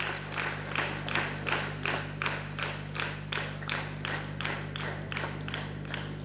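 Audience clapping in a steady, even rhythm, about three claps a second, as a prize is handed over, over a low steady hum.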